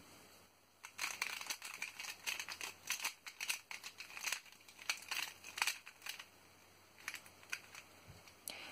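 X-Man Volt Square-1 puzzle being turned and sliced quickly in the hands as it is scrambled: a run of quick plastic clicks and clacks starting about a second in, with a short pause near the end before a few more clicks.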